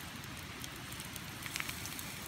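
Oyster mushroom pieces frying in butter in a small metal pot over campfire coals: a soft, steady crackling sizzle, with the coals' own crackle mixed in.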